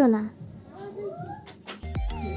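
Small white spitz-type dog whining in a couple of short rising whimpers about a second in. Music starts just before the end.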